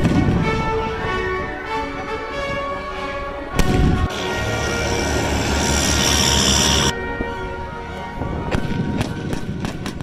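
Pyrotechnic fireball charges going off over music: a blast right at the start, a single sharp bang about three and a half seconds in, and a run of quicker cracks near the end.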